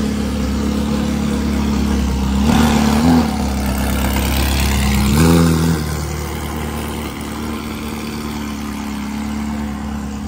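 Ferrari 360 Modena's V8 idling loudly, blipped twice: two short revs about two and a half and five seconds in, each dropping back to a steady idle.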